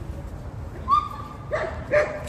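A dog whining: a high, drawn-out whine about a second in, then two short, lower yelps.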